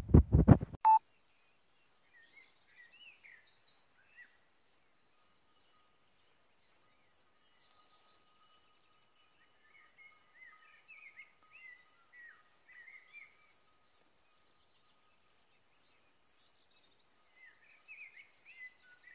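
A few loud low thumps in the first second, then a faint, even insect chirping, about three pulses a second, with scattered soft bird chirps and twitters.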